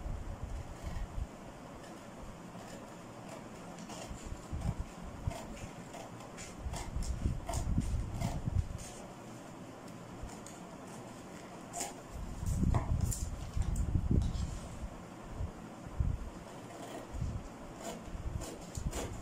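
Scissors snipping through stiff brown pattern paper in a run of short cuts, with the paper rustling as it is handled; the handling noise grows louder twice around the middle.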